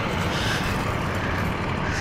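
A motor vehicle's engine running steadily nearby: a constant low rumble under a broad hiss.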